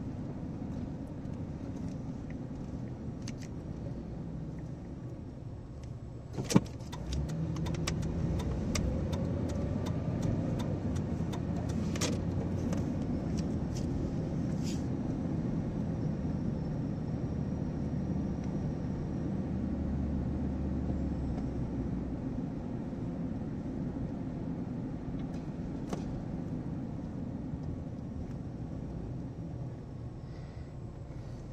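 Car cabin noise while driving: engine and tyre rumble. About six seconds in there is a sharp click, then the engine note rises and the noise grows louder as the car picks up speed, with small clicks and rattles, before settling into steady cruising noise.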